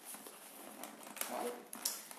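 Hands handling a cosmetic product's packaging: quiet rustling with a few small clicks as a tightly packed peel bottle is worked out of it.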